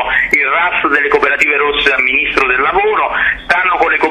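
Speech only: a man talking in Italian without a break, a stretch of interview answer.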